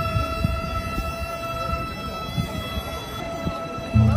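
Shinto festival procession music: one long, steady held note that carries on, slowly fading, over crowd murmur and footsteps. A deep drum beat falls right at the end.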